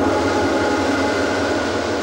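A loud, steady rumbling and hissing sound effect with several held tones in it, from a TV soundtrack.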